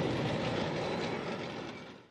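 Heavy, clattering rumble of military vehicles, a tank among them, fading out near the end.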